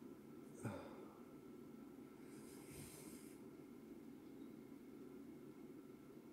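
Near silence: low room tone with a faint steady hum, a short soft breath sound about half a second in and a soft hissing breath around the middle.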